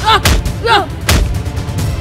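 Film fight sound effects: several heavy punch-and-slap impacts as a man is beaten, with short pitched grunting cries between the hits, over background music.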